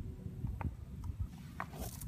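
Faint, irregular crunching and small clicks of footsteps on dry gravel and grass, over a low rumble.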